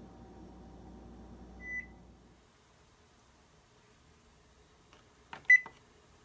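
Electric oven's touch control panel beeping as its buttons are pressed: one short high beep about two seconds in, then a few clicks and a second, louder beep of the same pitch near the end.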